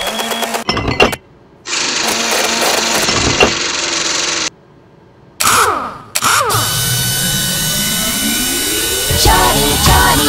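Cartoon machine sound effects for a toy-making conveyor: stretches of whirring and clatter broken by two short gaps, then sweeping tones and a rising build toward the end, over background music.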